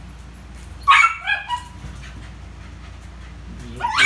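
Poodle barking: one sharp bark about a second in that falls in pitch, and a second bark right at the end.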